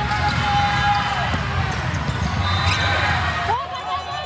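Volleyball being served and struck during a rally, with a few sharp hits, over steady voices and the hum of a large hall. Near the end, sneakers squeak several times on the court.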